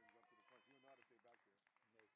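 Faint, indistinct voices calling out, with a few short clicks.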